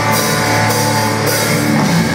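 Live rock band with electric guitars, bass and drum kit playing loud, a chord held ringing under cymbal crashes near the start and again just past halfway.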